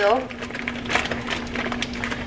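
Cooked cauliflower rice tipped from a plastic bag into a hot nonstick pan of onions: a dense, irregular crackling.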